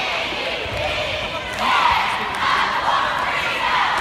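Cheerleading squad shouting a cheer in unison over crowd noise, with a few dull thuds.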